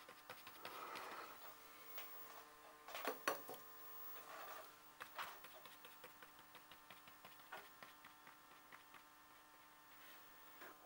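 Near silence: faint, scattered dabs and scratches of a watercolour brush on damp paper over a faint steady hum, with one brief louder sound about three seconds in.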